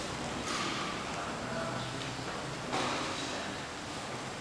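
Room ambience with faint, indistinct voices and two sharp knocks, one about half a second in and a louder one near three seconds.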